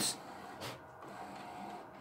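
HP large-format printer running faintly: a quiet, steady mechanical whir.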